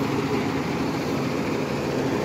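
School bus engine idling steadily.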